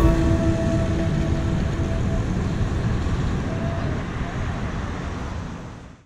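The last held note of background music dies away over a steady low rumble of wind and road noise from riding along, and the whole sound fades out to nothing at the end.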